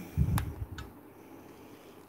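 A short low thump with a sharp click just after it, and a fainter click a moment later, then quiet room tone.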